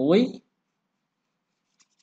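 A man's voice speaking, breaking off about half a second in, followed by dead silence with a single faint tick near the end.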